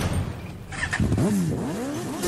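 Transition between tracks in a DJ mix: the music drops to a hissy lull, then from about halfway through a sound effect of swooping up-and-down pitch glides plays.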